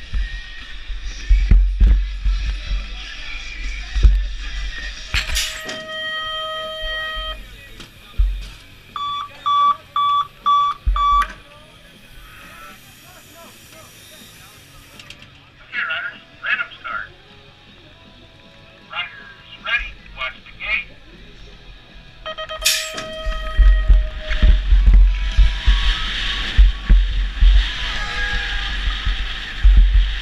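Wind rush and rolling noise of a BMX bike on the track, broken in the middle by a BMX starting gate's electronic start cadence: a held tone, then four short, evenly spaced beeps about ten seconds in. Short voice calls and a second held tone come a little later, before the riding noise returns loud near the end.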